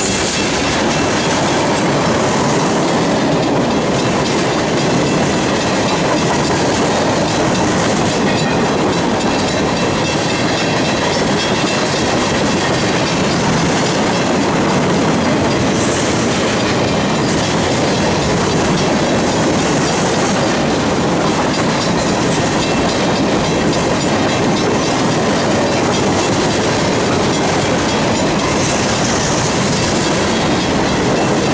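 Freight train of tank cars and covered grain hopper cars rolling past close by at steady speed: the steel wheels on the rails make a loud, steady running noise.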